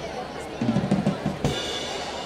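Drum kit playing loud beats as part of music over the festival sound system, with a heavy cluster of bass and snare hits about half a second in that ends on a sharp hit.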